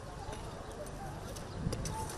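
Long-handled hoe scraping and knocking in dry excavation soil, with a few light knocks and a dull thud about one and a half seconds in.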